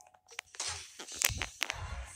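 Handling noise from a phone being moved while it records: a few sharp clicks, a brief hiss, and low rumble from rubbing on the microphone in the second second.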